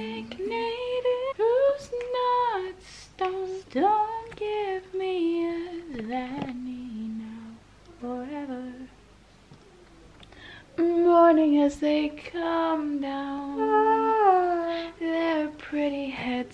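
A young woman singing a wordless melody, humming with long held notes that slide from pitch to pitch. There is a short pause about nine seconds in, and then the singing starts again louder.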